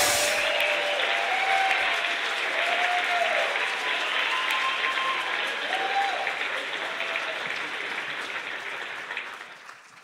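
Audience applauding in a large hall. The clapping fades gradually and has nearly died away by the end.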